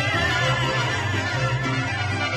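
Live mariachi ensemble playing: violins and trumpets carry the melody over a rhythmic guitarrón bass line and strummed guitars, with a harp.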